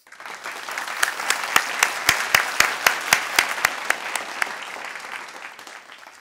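Audience applauding, building quickly and then fading out, with a few sharp individual claps standing out near the microphone.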